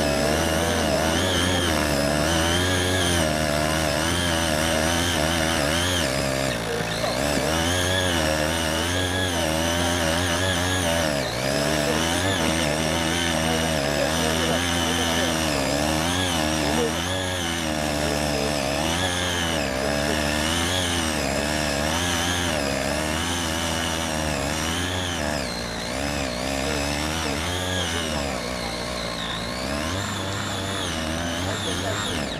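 Small air-cooled two-stroke mini tiller engine running under load as its tines churn soil frozen beneath the surface, its speed rising and falling continually as the blades dig in and free up.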